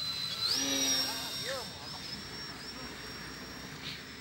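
Electric RC trainer airplane in flight: the high whine of its small electric motor and propeller steps up in pitch about half a second in as the throttle opens, then holds with slight wavers as the plane climbs.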